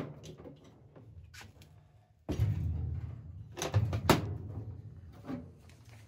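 Corded power saw cutting into the sheet-metal cabinet of an old Frigidaire chest freezer, starting up about two seconds in and running with a rough rumble, broken by sharp metallic knocks and rattles.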